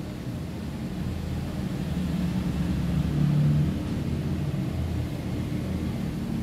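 A low, steady rumble that swells from about two seconds in, peaks with a brief hum around three and a half seconds, then eases back.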